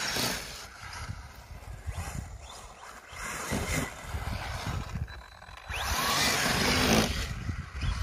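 Arrma Senton 3S BLX RC truck driving across grass, its brushless motor whining in short revs under a rushing wind noise that is loudest about six to seven seconds in.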